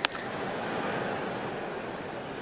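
Steady stadium crowd noise, with one sharp pop right at the start as a pitched baseball smacks into the catcher's mitt.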